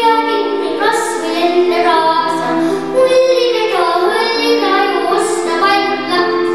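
Young children singing a song into microphones.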